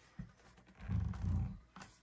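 Plastic five-gallon bucket on a rubber non-slip base being turned on a stone countertop: a light knock, then a low scraping rumble lasting under a second.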